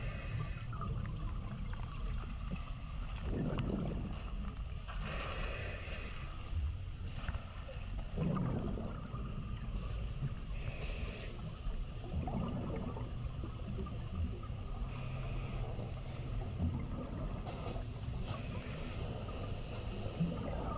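Underwater audio from a camera housing: a steady low rumble of fast-flowing spring water, with a scuba diver's exhaled regulator bubbles gurgling up every few seconds.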